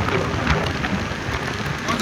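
Steady rushing road noise of a car driving through a road tunnel: tyre and wind noise heard from inside the car.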